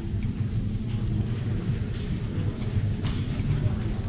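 A handheld whiteboard eraser wiping marker off a whiteboard in soft strokes, over a steady low room rumble, with one sharp click about three seconds in.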